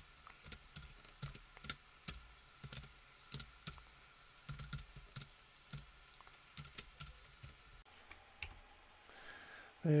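Typing on a computer keyboard: separate, irregular key clicks, a few a second, stopping about eight seconds in.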